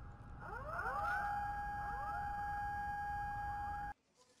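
Tsunami warning sirens sounding: several wails climb in pitch one after another and settle into one loud, steady tone over a faint low rumble. The sound cuts off suddenly just before the end.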